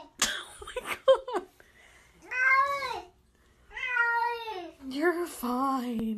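Wet cat in a bathtub meowing in protest at being bathed: long, drawn-out yowls that sound almost like words, each rising then falling in pitch. There are three of them, after a short burst of noise near the start.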